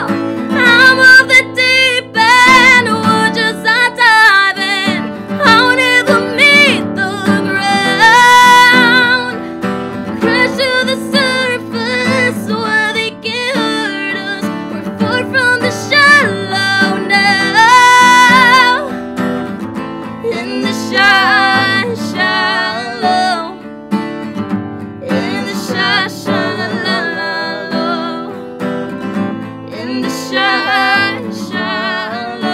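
A woman singing long, high, gliding notes over a strummed acoustic guitar. The voice eases off for a few seconds about twenty seconds in, then comes back.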